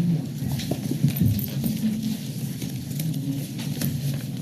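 Papers rustling and small irregular knocks picked up by the table microphones in a meeting room, over a low, steady rumble.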